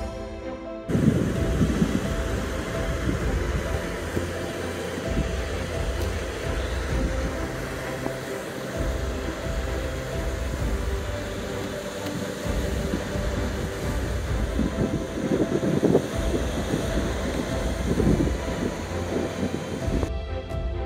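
Small lake waves breaking and washing up on a sand beach, with wind gusting on the microphone in uneven low rumbles. It starts suddenly about a second in.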